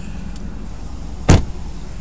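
A vehicle door being shut once with a single solid thump about a second and a half in, over a steady low hum.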